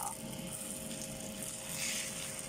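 An onion omelette frying in oil in a stainless steel pan: a low, steady sizzle that swells briefly near the end as the omelette is turned over.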